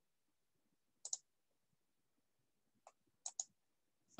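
Near silence broken by a few short computer mouse clicks: a pair about a second in, then three more near the end.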